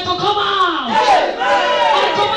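A woman shouting a fervent prayer into a microphone, amplified through a PA in a hall, her voice held in long cries that glide up and down in pitch.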